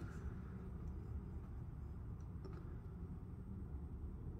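Quiet, steady low background hum with a few faint ticks about halfway through.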